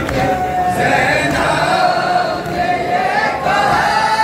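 Mourners' voices chanting a Muharram lament together, a melody carried in long, slowly wavering held notes.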